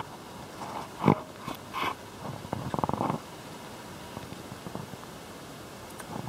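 Russian tortoise biting and chewing thawed sweet corn kernels: scattered soft clicks and crunches, with a quick run of clicks about three seconds in, then quieter.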